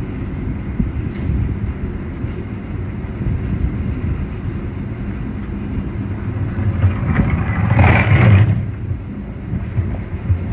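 Wind buffeting the microphone: a loud, uneven low rumble, with a stronger rush about eight seconds in.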